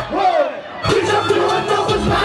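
Live hip hop concert: a shouted vocal and crowd noise over a loud backing beat. The beat cuts out briefly just after the start and drops back in a little under a second in.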